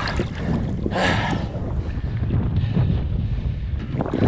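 A released shark splashing through shallow water as it swims off, with a louder splash about a second in, over a steady rumble of wind on the microphone.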